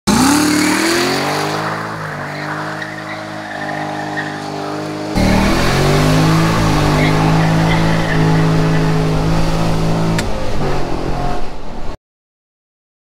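6.2-litre V8 of a C6 Corvette accelerating hard: the engine note climbs in pitch and then holds. About five seconds in it is heard from inside the cabin, louder and with heavy low rumble, climbing again and holding steady.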